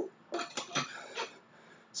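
Drinking from a metal water bottle: a quick run of gulps and water sloshing in the bottle, lasting about a second, then quiet.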